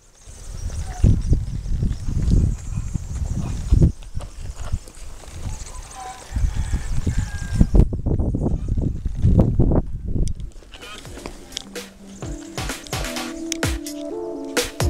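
Irregular gusts of rumbling outdoor noise on the microphone, then electronic background music with a beat and held tones coming in near the end.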